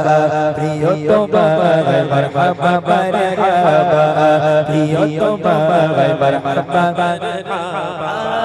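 Male singer performing an Islamic gojol (devotional ghazal) into a microphone: a sustained, ornamented melody that wavers and turns on held notes. A steady low tone is held underneath the whole time.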